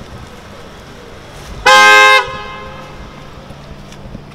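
A car horn gives one short, loud honk of about half a second, a little under two seconds in, over a low steady background hum.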